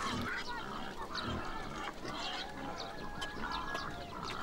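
Farmyard fowl calling, a scattering of short honks and calls with no one voice standing out.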